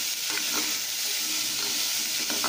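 Chopped bottle gourd sizzling steadily as it fries in oil in a pressure cooker, stirred with a metal spatula that gives a few light scrapes and taps against the pot.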